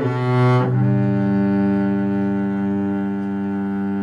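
Double bass played with the bow: a short note, then one long note held steadily.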